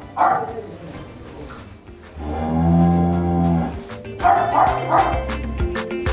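Dairy cow mooing once, a long low call about two seconds in.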